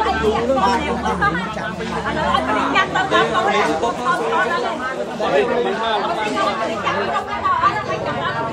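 A crowd of people talking over one another, several voices at once, with no pause.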